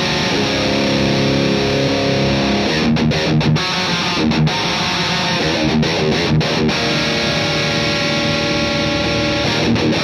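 Six-string electric guitar played through a Matthews Effects Architect V3 Klon-style overdrive with its boost engaged, into a Marshall JCM800 amp. The distorted riff alternates held, ringing chords with short, choppy muted strokes.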